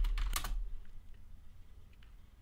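Computer keyboard keystrokes as a terminal command is typed: a few quick key clicks in the first half second, then only faint scattered ticks.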